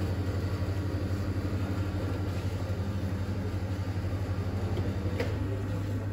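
A steady, low machine hum with a quick, even pulsing in it, settling into a smoother tone near the end. There is a single light click about five seconds in.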